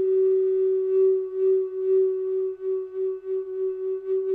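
Alaskan yellow cedar Native American-style flute in low C holding one long note. It starts steady, then pulses quickly in loudness from about a second in.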